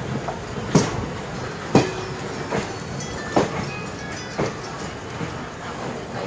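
Godavari Express train running over rail joints: a sharp wheel clack roughly once a second over a steady rumble.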